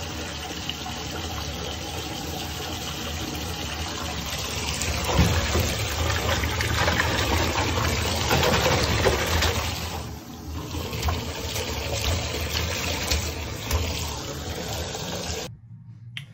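Bath tap running hard into a filling bathtub, water splashing into foamy bubble-bath water. The rush is steady, swells about five seconds in, dips briefly around ten seconds, and cuts off suddenly near the end.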